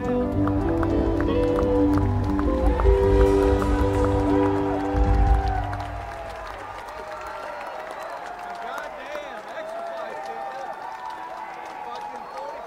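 Live band playing the closing instrumental bars of a song, with sustained chords over a thumping bass and drums, swelling to a final chord that cuts off about halfway through. Then the audience cheers, whistles and applauds.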